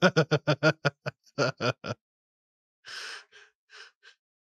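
A person laughing in a quick run of short "ha"s over the first two seconds. Near the end come three breathy gasps, the first the longest.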